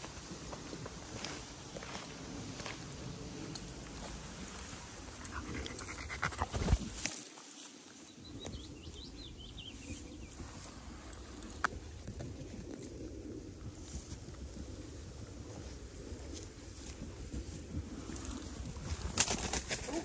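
Rustling and brushing in long grass as dogs sniff around in it, with scattered small clicks and one louder brush about seven seconds in.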